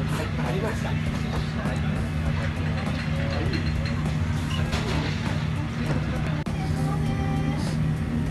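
Ramen shop background: a steady low hum under voices and music.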